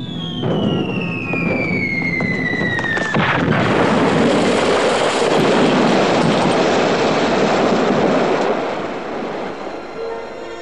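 A falling bomb whistles down in a steadily dropping tone for about three seconds, then explodes in a loud blast whose rumble lasts several seconds and fades near the end.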